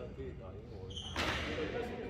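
Men's voices talking on a squash court. A short high squeak comes just before a second in, followed at once by a loud, brief hissing rush of noise.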